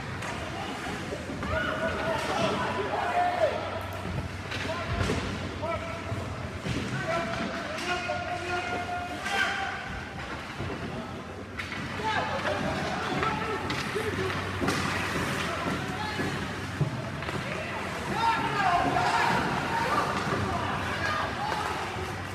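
Ice hockey rink sound during youth game play: indistinct spectator chatter with scattered sharp clacks and thuds of sticks and puck, over a steady low hum.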